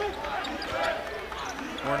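Basketball being dribbled on a hardwood gym floor, a few bounces under the murmur of the gym.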